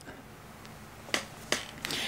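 Quiet room tone broken by a few short, sharp clicks, the two clearest just over a second in, about a third of a second apart.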